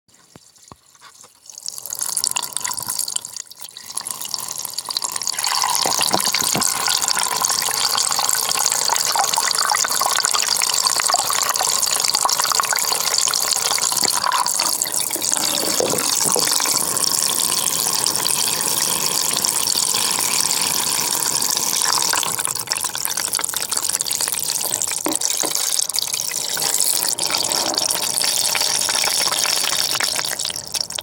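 Tap water running into a washbasin and filling it, picked up by a 360 camera in a waterproof case lying in the basin as the water rises over it. The water starts about two seconds in and runs steadily from about five seconds on.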